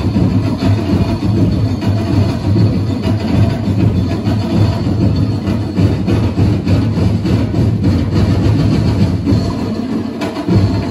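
Loud festival drumming: a percussion ensemble playing a dense, driving beat without a break.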